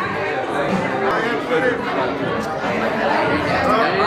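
Several people talking at once: overlapping, indistinct chatter in a room.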